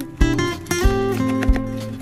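Instrumental background music with held notes and a regular beat, thumps about two thirds of a second apart.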